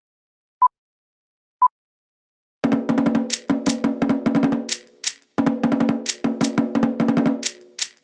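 Two short beeps a second apart, then fast Tahitian drum music starting about two and a half seconds in: rapid wooden slit-drum strokes over deeper drum beats, with a brief break a little after five seconds.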